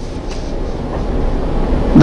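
Steady background hiss and low rumble of the lecture recording, swelling slightly, with no voice.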